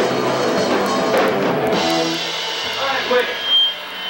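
A post-hardcore punk band playing loud live, with drums and distorted electric guitars. About halfway through the full band drops out, leaving a few sustained ringing guitar notes and a brief high whine. Someone says "wait" near the end.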